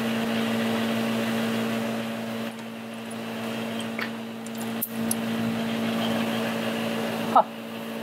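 Steady hum with an even hiss of compressed shop air running through a leak-down tester while its hose is fitted to a spark plug hole for the next cylinder.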